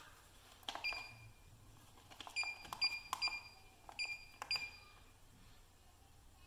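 NAPCO iSecure alarm system sounding short, high beeps in quick pairs, about seven in all, mixed with small plastic clicks as the wireless door/window sensors are opened and closed. Each beep is the system registering a zone being opened, which shows the sensors are enrolled.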